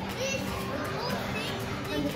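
Children playing: faint, high children's voices calling out over the steady background noise of an indoor play centre.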